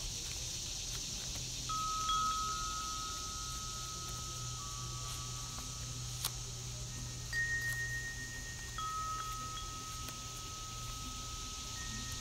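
Wind chimes ringing slowly: a few long, clear tones that start one or two at a time at irregular moments and ring on for several seconds, over a steady high hiss. Paper pages rustle and click faintly as they are turned.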